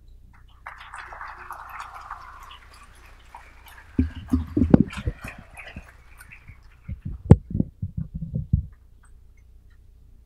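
Handling noise on the podium microphone: two runs of sharp thumps and bumps, about four seconds in and again about seven seconds in, as the microphone is touched and adjusted. Under them is a faint wash of room noise that dies away after about six seconds.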